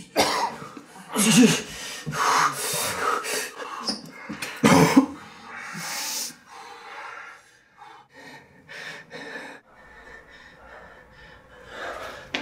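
A man coughing, wheezing and gasping for breath in pain, loudest over the first six seconds or so, then fading to quieter, ragged breathing.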